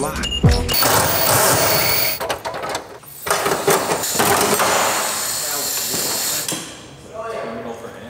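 A front bumper and its support being wrenched off a third-generation Camaro: harsh scraping and rattling of plastic and metal, with a burst of knocks and cracks a couple of seconds in. Music plays briefly at the very start.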